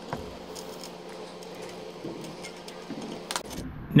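Quiet handling of the arbor press's steel lever handle as its end piece is fitted on, with a couple of short clicks near the end.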